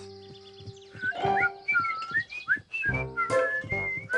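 A cheerful whistled tune of short sliding notes over light cartoon background music, starting about a second in.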